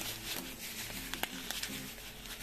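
Coarse salt poured from a plastic bag pattering onto olives in a plastic basin: a scatter of many small ticks.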